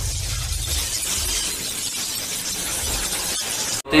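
Sound effect of a video intro animation: a dense noisy rush with a low rumble underneath that cuts off suddenly near the end.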